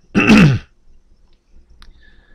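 A man clearing his throat once, a short harsh burst at the start, followed by quiet room tone with a faint click near the end.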